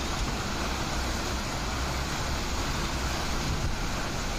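Steady, even rushing noise of a heavy rainstorm, with a low rumble underneath.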